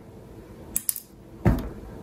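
A couple of faint clicks, then a single thump about one and a half seconds in: small parts and a hand being set down on a wooden tabletop.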